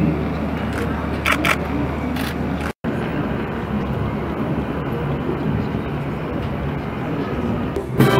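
Outdoor audience murmur and chatter as a crowd waits, with a couple of short camera-shutter clicks about a second and a half in. The sound drops out completely for a moment just under three seconds in.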